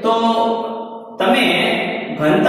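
A man's voice speaking in long, drawn-out syllables: one held sound fading away, then a new one starting about a second in.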